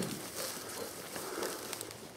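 Faint rustling and crackling of dry undergrowth and twigs, with scattered small ticks and no clear single event.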